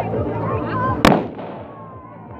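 A single sharp firecracker bang about a second in, over people talking, with the noise dying down after it.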